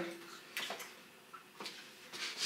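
A mostly quiet room with a few short, faint clicks and taps spread across it.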